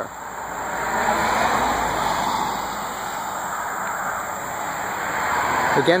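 A car passing on the road: tyre and engine noise swells over the first second or two, then eases off to a steady hum.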